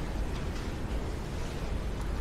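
A pause in the talk: lecture-hall room tone, a steady low hum with faint hiss and no distinct events.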